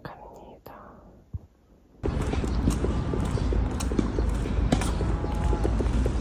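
Two seconds of quiet room tone with a few soft clicks, then outdoor noise with a heavy low rumble that starts suddenly. Over it come irregular light clicks and knocks of footsteps on a paved sidewalk and a handbag's metal fittings jostling while walking.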